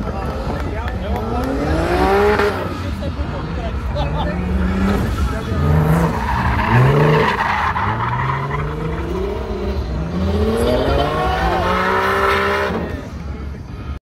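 Turbocharged BMW S54B32 straight-six drift car revving hard and falling off again and again as it slides, with tyres squealing under the drift. The revs climb in repeated surges, the longest near the end, before the sound drops away in the last second.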